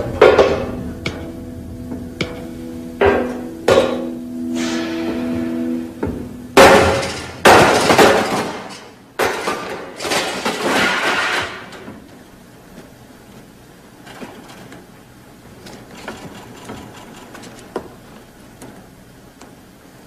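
A louvred window being forced open: a run of sharp knocks over a held music chord, then three loud crashing, scraping noises as the louvres are wrenched out, followed by faint small clicks and rustles in the second half.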